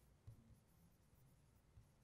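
Near silence: room tone with a few faint soft taps of a stylus writing on a touchscreen board.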